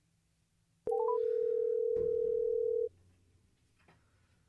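Telephone call tone over the studio line as an outgoing call rings through: a click and three quick rising notes, then one steady tone lasting about two seconds that cuts off. A soft knock comes partway through the tone.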